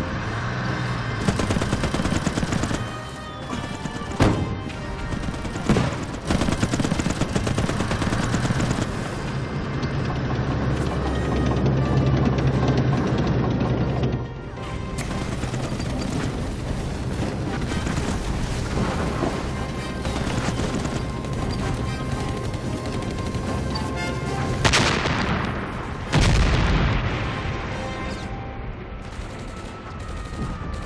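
Battle sound effects: gunfire and explosions, with heavy blasts a few seconds in and twice more about 25 seconds in, mixed under dramatic orchestral film music.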